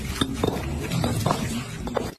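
Concrete interlocking paving blocks knocking against each other as they are set by hand, a string of irregular knocks over a low steady rumble.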